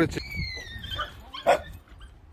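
A puppy's high-pitched yelp that slides down in pitch over nearly a second. About a second and a half in comes one short bark.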